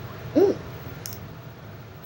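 A man's short exclamation "ooh", then a single brief click about a second in, over a steady low background hum.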